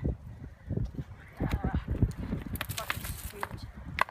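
Shoes scuffing and knocking on loose limestone rock as a person slides down a rocky ledge on her seat, with dry twigs and branches crackling against her. The knocks and crunches come irregularly, with a burst of crackling near the three-second mark.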